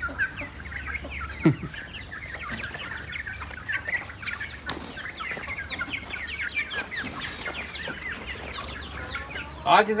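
A flock of farmyard hens clucking, many short calls overlapping continuously. A single brief, louder sound falling in pitch comes about a second and a half in.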